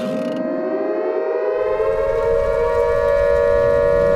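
Air-raid siren sound effect winding up. Its wail rises in pitch and levels off over a steady held tone, a low rumble comes in about a second and a half in, and a second wind-up starts near the end.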